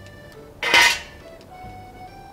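Bicycle chain and chain tool clinking in one short metallic rattle about two-thirds of a second in, while the chain is broken by pushing out its connecting pin. Soft background music runs underneath.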